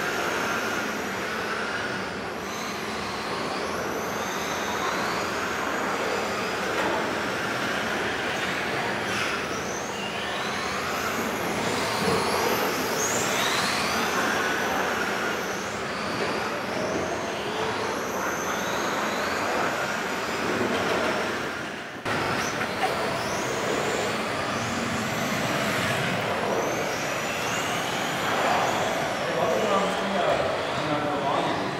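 Several RC model cars' electric motors whining, the pitch of each rising and falling as the cars accelerate, brake and corner on the track, echoing in a sports hall.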